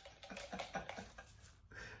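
Soft laughter: a quick run of short breathy laughs that fades out after about a second.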